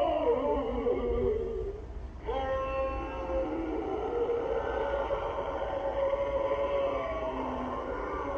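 Sound box built into a Frankenstein mask playing an eerie sound effect: a wavering, moaning tone, a short break about two seconds in, then a steadier drawn-out droning tone.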